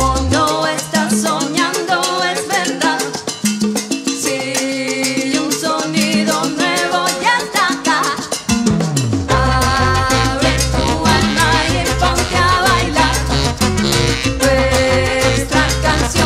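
Salsa orchestra playing an instrumental passage live, with brass, piano and Latin percussion and no singing. The bass drops out for the first half, then a falling low note brings the full band back in about nine seconds in.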